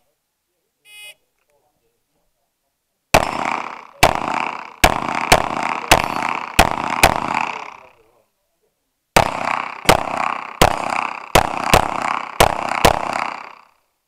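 A shot timer beeps once, then fourteen rapid gunshots follow in two strings of seven, roughly half a second to a second apart, with a pause of about a second between the strings. Each shot is followed by a short echo.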